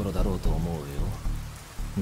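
A man speaking a line of Japanese film dialogue, which ends about a second in, over a low steady background of film ambience.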